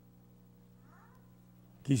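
A quiet pause holding a low steady hum, with one faint, short falling cry about a second in. A man's voice starts loudly right at the end.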